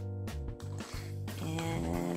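Background music: sustained notes over a bass line that steps from note to note.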